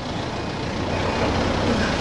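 A motor vehicle running close by on the street, a steady engine rumble with tyre and road noise that grows slightly louder toward the end.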